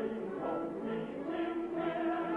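Soundtrack music: a choir singing, with long held notes.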